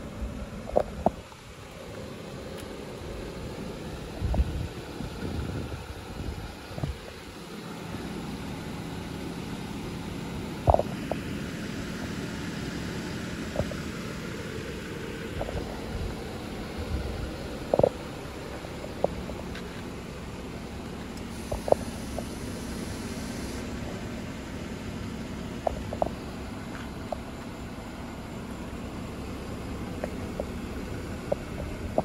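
A low, steady rumble with a faint hum, louder for a few seconds near the start, with a dozen or so short sharp clicks scattered through.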